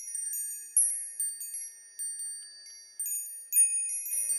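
Shimmering chime sound effect: a string of high, bell-like notes struck one after another, each ringing on, with fresh strikes about every half second to second.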